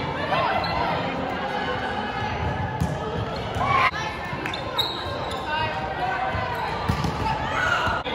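Indistinct calls and shouts of players and spectators during a volleyball rally, with several sharp hits of the volleyball. A loud rising shout just before the middle is the loudest moment.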